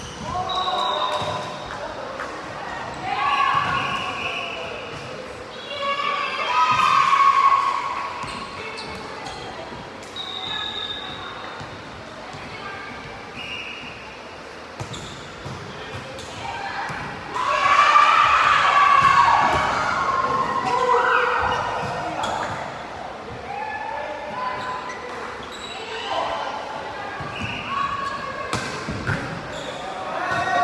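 Volleyball rallies: the ball struck again and again by players' hands and arms, with players shouting calls. The loudest shouting comes in two bursts, one about a third of the way in and a longer one past the middle. All of it echoes in a large sports hall.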